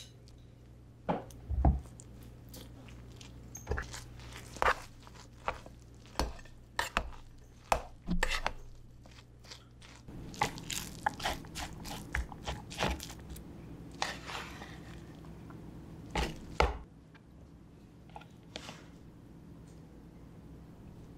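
Utensils knocking and scraping as coconut oil is scooped from a plastic jar and stirred through cooked rice in a rice cooker's inner pot: scattered short clicks and knocks, over a steady low hum.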